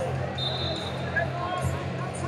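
Busy indoor wrestling-arena ambience: distant voices over a steady low hum, with scattered short squeaks and a brief high steady tone about half a second in.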